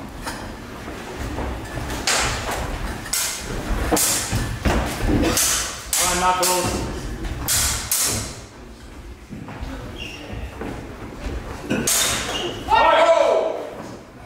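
Longsword sparring in a large hall: a run of quick thuds and knocks from fencers' feet on the wooden floor and blows landing, for about six seconds, then quieter.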